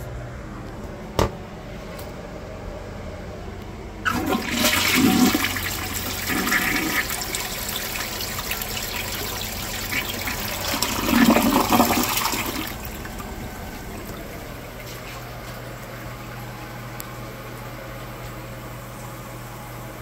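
Briggs Altima toilet flushing: a sharp click about a second in, then a sudden rush of water into the bowl about four seconds in that swirls and drains for roughly nine seconds, loudest near its end. It is followed by a quieter steady hiss as the toilet refills.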